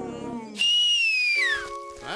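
Cartoon sound effect: a loud whistle that starts suddenly and slides down in pitch over about a second. It is followed by a short chord of steady held tones.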